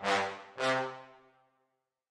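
Sampled orchestral brass from the Battalion Kontakt library: two short low brass notes at the same pitch, about half a second apart, each with a sharp start, the second fading out over about a second.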